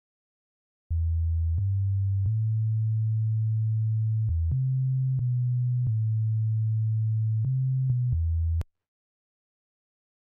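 A clean, sine-like synth bass line played on its own from an FL Studio piano roll. It starts about a second in with low sustained notes that step up and down in pitch, gives a small click at each note change, and cuts off suddenly near the end.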